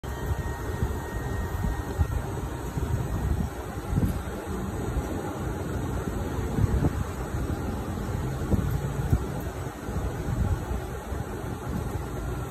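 Garland Xpress gas clamshell grill running under test: a steady low rumble, with a few short knocks as the upper platen is lowered.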